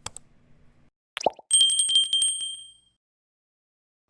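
Subscribe-button animation sound effects: a click, a short falling pop, then a bright notification-bell ring that trills briefly and dies away over about a second.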